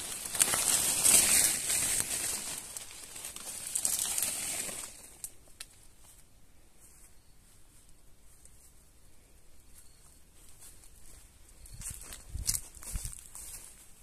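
Coffee-bush leaves rustle and brush close to the microphone for about the first five seconds, then it goes quieter. Near the end come a few footsteps on dry grass.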